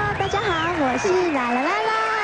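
Only speech: a woman greeting 'hello everyone' into a handheld microphone in a high, sing-song voice whose pitch swoops up and down.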